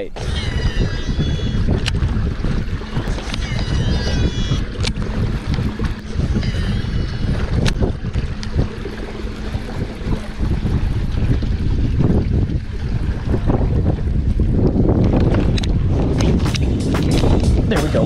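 Steady wind buffeting the microphone on open water, with a few short high chirps in the first seven seconds. Near the end there is water splashing and a run of sharp clicks as a hooked bass thrashes at the kayak's side.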